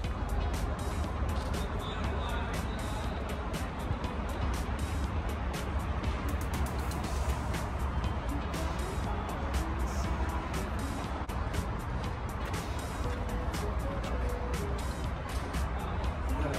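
Music playing over a steady low rumble, broken by many short irregular crackles.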